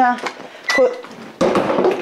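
Brief bits of a woman's voice, then, from about a second and a half in, a short noisy rustle or scuffle.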